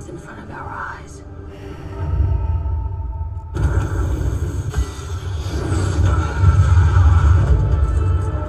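Film trailer soundtrack: a deep rumbling score swells in about two seconds in, dips briefly, then builds louder toward the end.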